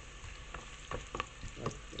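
Diced parsley root and celery sizzling as they fry in hot oil with browning onion in a stainless steel pot. A few sharp clicks as more pieces are dropped in.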